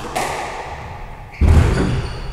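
Squash ball being struck and hitting the court walls during a rally: two sharp hits about a second and a half apart, the second louder and deeper, each ringing in the enclosed court.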